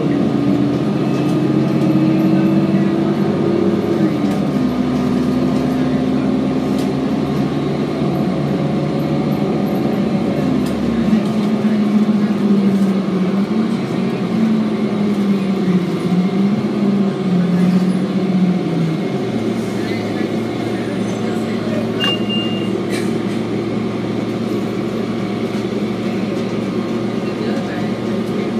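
Onboard a 2007 Orion VII diesel city bus under way: the diesel engine's drone rises and falls in pitch as the bus speeds up and shifts gears, then fades about two-thirds of the way through as the bus eases off. A short beep sounds near the end.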